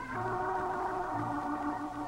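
Slow organ music of held chords, with the lower note stepping down about a second in.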